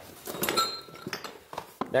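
Parts being handled on a floor: a short clatter with a brief metallic ring about half a second in, as a box is picked up from among metal fittings. A man's voice starts near the end.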